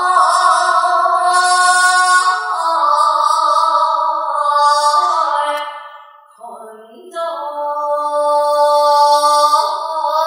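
A woman singing a slow melody in long held notes that glide gently between pitches, pausing briefly about six seconds in before taking up the line again.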